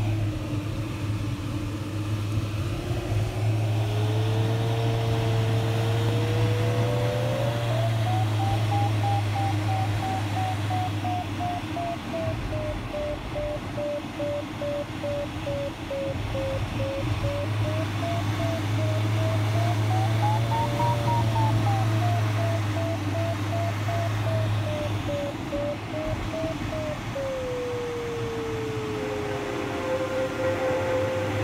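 Glider variometer tone over steady cockpit airflow noise: a held tone sliding slowly up in pitch turns into rapid beeping about a quarter of the way in, its pitch rising and falling and peaking about two-thirds in, then goes back to a steady tone sliding down near the end. The beeping and rising pitch signal that the glider is climbing in lift.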